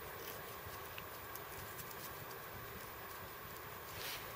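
Faint rustling and small scattered ticks from hands working thin cord around a wooden toggle stick, over a low, steady outdoor hiss.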